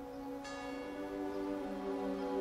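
A bell struck once about half a second in, ringing on over soft sustained music.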